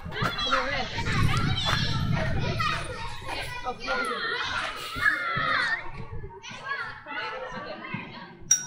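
Several children playing and calling out, their high voices overlapping, with a low rumble under them for the first few seconds.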